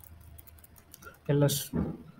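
Light clicks of computer keyboard keys being typed, then a man's voice briefly, louder, in the last second.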